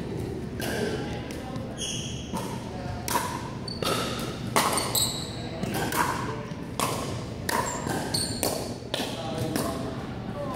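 Pickleball paddles striking a hollow plastic ball during a doubles rally: a string of sharp pops that ring in a large gym, with short high squeaks of sneakers on the hardwood floor.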